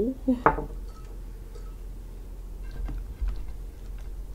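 A few faint clinks and taps of a metal spoon and a small ceramic bowl being handled and set down on a table, after a brief spoken word at the start.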